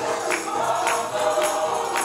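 Gospel music: a choir singing, with a tambourine struck on a steady beat a little under two times a second.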